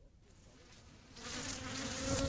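A mosquito buzzing steadily, fading in from near silence and getting louder about a second in.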